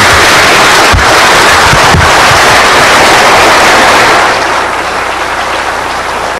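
Audience applauding: a dense, loud clatter of many hands clapping that eases off somewhat after about four seconds.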